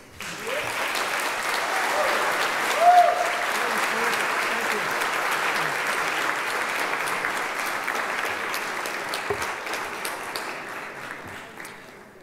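Audience applauding, with a brief voice calling out about three seconds in; the clapping dies away near the end.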